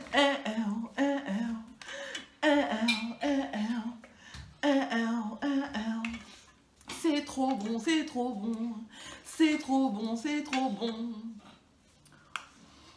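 A woman's voice humming a tune in short phrases, with brief pauses between them.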